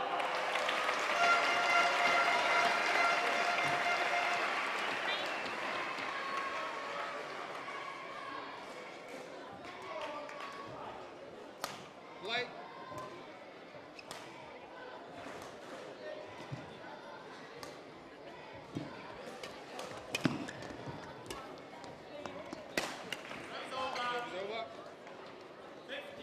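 Sounds of a badminton match in an arena hall. The first few seconds hold a burst of crowd noise with a sustained tone over it, the loudest part. After that come scattered sharp racket-on-shuttlecock hits and short shoe squeaks on the court mat.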